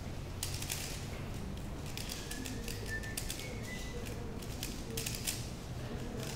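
3x3 speedcube being turned fast by hand during a speedsolve: quick bursts of plastic clicking and clacking as the layers snap round, about one burst a second, over a steady low background hum.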